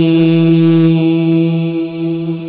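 A man's voice holding one long, steady chanted note, amplified through a microphone, as part of the melodic Arabic opening recitation of a sermon; it eases off slightly near the end.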